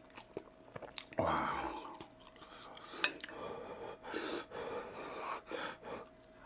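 Close-up eating sounds of a man chewing ramen noodles, with a louder, airy slurp just over a second in and a sharp click around three seconds in.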